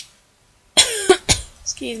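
A woman coughing, about three sharp coughs in quick succession a little under a second in. A brief click comes right at the start.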